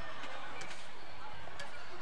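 Basketball gym ambience: a steady hiss of the hall with faint footfalls and light knocks of young players on the hardwood court.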